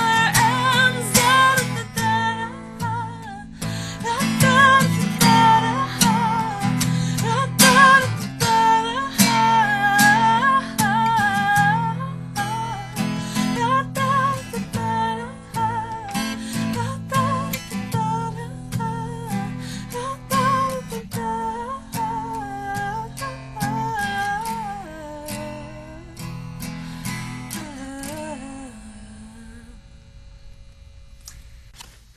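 Acoustic guitar strummed under a wordless sung melody in the song's closing bars. It grows gradually quieter and the last chord rings away near the end.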